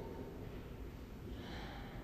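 A pause in a man's speech: faint room hiss, with a breath drawn in near the end, just before he speaks again.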